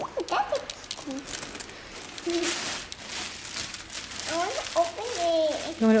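Clear cellophane gift-basket wrap crinkling as children's hands grab and pull at it, with irregular crackles.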